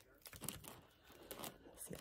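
Faint, irregular rustling and crinkling of a sheer organza gift bag and its drawstring ribbon as fingers pick at the tie to open it.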